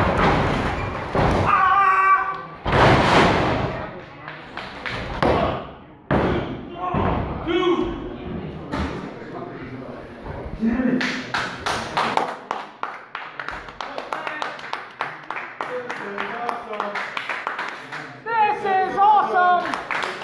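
Wrestlers' bodies landing on the ring mat with heavy thuds, mixed with shouting from a small crowd, followed in the second half by a spell of rhythmic clapping from the crowd.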